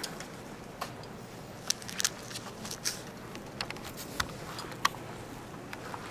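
Indoor room tone with a steady low hum, broken by scattered light clicks and taps at irregular intervals, the sharpest about two seconds and five seconds in.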